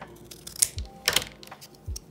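Scissors snipping through a strip of corrugated cardboard, two sharp cuts about half a second apart around the middle, then a dull knock near the end.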